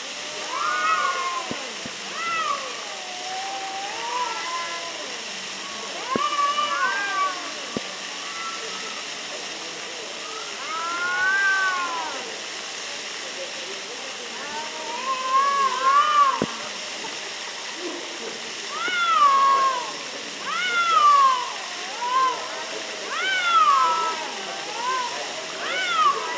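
Two cats in a standoff yowling at each other: long, wavering calls that rise and fall in pitch, traded back and forth with short pauses, growing louder and closer together in the last few seconds. A territorial confrontation.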